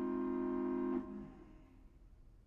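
Organ holding a sustained chord that is released about a second in and dies away, leaving near quiet.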